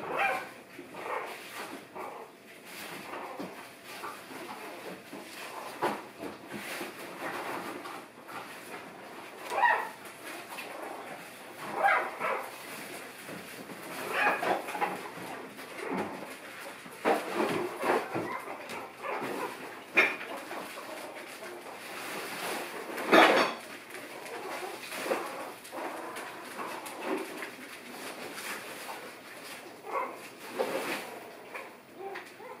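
Three-week-old puppies whimpering and giving short squeaky yips, many separate small calls scattered throughout, the loudest about three-quarters of the way through.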